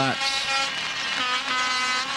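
Two horn blasts from the stands, the second higher and longer, over general crowd noise: the crowd saluting a crashed speedway rider who is back on his feet.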